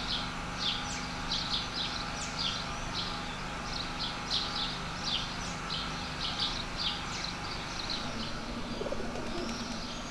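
Small birds chirping: a continuous run of short, high chirps, several a second. A low steady hum comes in near the end.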